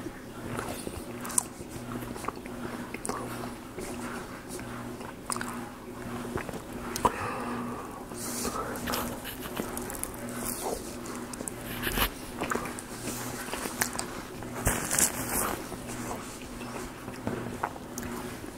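Close-miked eating of a sausage, egg and cheese bragel sandwich: biting and chewing, with irregular wet mouth clicks and soft crunches. Sharper bites come about twelve and fifteen seconds in.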